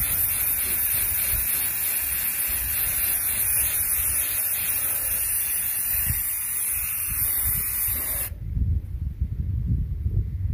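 Rust-Oleum Camouflage 2X Ultra Cover aerosol spray paint can spraying Army Green in one long, steady hiss that cuts off suddenly about eight seconds in. A low rumble follows.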